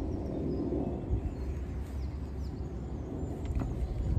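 Outdoor ambience: a steady low rumble with a few faint bird chirps, and a light click near the end.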